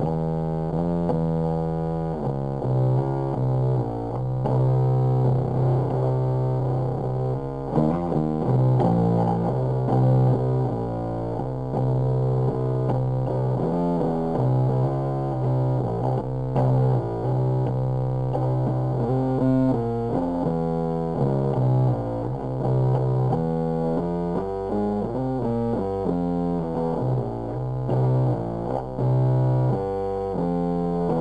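Five-string Ibanez GSR205 electric bass tuned to C standard, played through a Big Muff Pi fuzz pedal into a Coxx CB-30 amp: a heavily fuzzed, slow doom-metal riff of held low notes with quicker runs between them.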